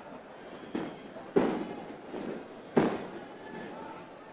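Firecrackers going off outdoors: three sharp bangs, the last two loudest, each trailing off in an echo.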